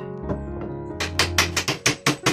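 A hammer driving a nail into a wooden slat: a quick run of sharp blows, about six a second, starting about halfway in, over steady background music.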